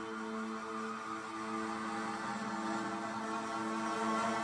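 Background music: a soft, sustained chord held steady, growing slightly louder.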